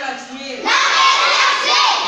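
A group of children's voices reciting a phrase loudly in chorus, starting a little over half a second in.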